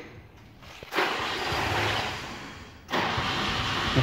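ZAZ-965 Zaporozhets air-cooled V4 being started. It turns over for about two seconds starting a second in, stops, and a second try starts just before three seconds in.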